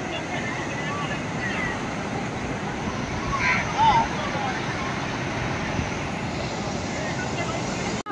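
Ocean surf breaking and washing up the beach in a steady rush, with faint distant voices and a brief shout about four seconds in.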